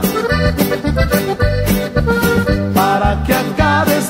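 Norteño band playing an instrumental passage between sung verses: button accordion carrying a wavering melody over a steady bass and rhythm-guitar beat.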